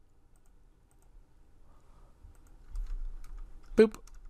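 Faint, scattered clicks of a computer keyboard and mouse while a file name is selected and edited, over a low rumble that comes up a little past halfway.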